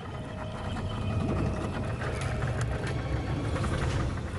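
A boat's motor running with a steady low rumble, with a few light clicks over it.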